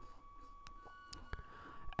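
Quiet room tone with a faint steady whine and three faint, short clicks from a computer mouse, the first as Open is clicked in the right-click menu.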